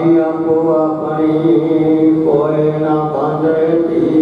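A man's voice chanting a Sikh prayer in a sustained, melodic recitation, with long held notes that glide between syllables, heard over a loudspeaker system.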